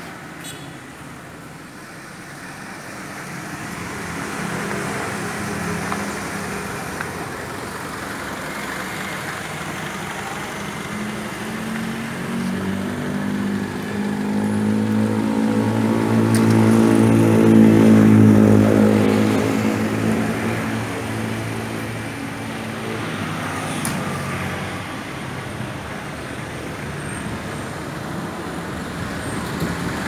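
Road traffic: a motor vehicle's engine grows louder over several seconds, peaks just past the middle, then fades again, over a steady background of street noise.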